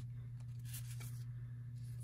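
Faint rustle of Allen & Ginter baseball cards sliding against each other as they are flipped through by hand, over a steady low hum.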